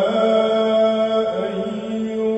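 A male munshid sings an Islamic inshad solo and unaccompanied, holding one long sustained note with a slight waver in pitch.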